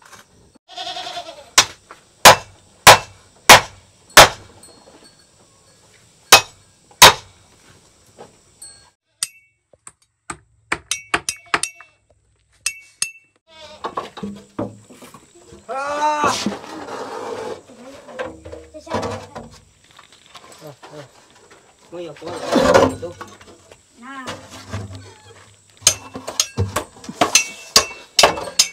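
Loud, sharp metal knocks, about seven strikes in the first seven seconds, from tools working a motorbike tyre off its rim. Later come scattered clinks and knocks with voices or bleating calls.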